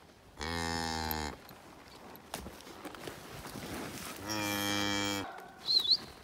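Range cattle mooing: two long calls, each about a second long and held at a steady pitch, the second about four seconds in.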